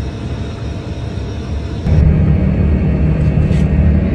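Steady low drone of an aircraft cabin in flight, heard through a phone's microphone. It jumps louder about two seconds in.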